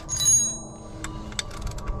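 A metallic clink near the start that rings on briefly, then a few light clicks, as the metal wiper motor and linkage assembly are handled while the motor is taken off.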